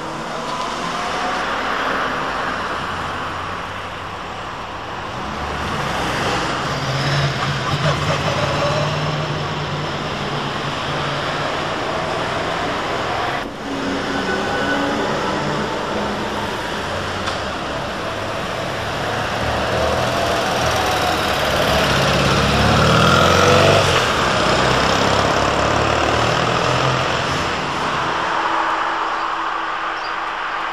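Articulated trolleybus driving past close by, the whine of its electric traction motor rising and falling as it pulls away, with other road traffic.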